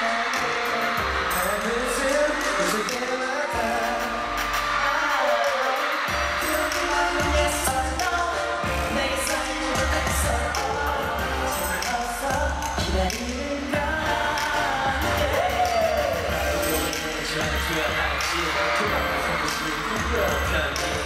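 Live K-pop boy-band performance: male vocals sung over a pop backing track, with the bass beat coming in about six seconds in.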